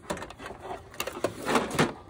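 Plastic-cased electronics clattering and scraping against each other as a Blu-ray player is pulled out from under a stacked DVD player and converter box: a run of knocks and scrapes, loudest near the end.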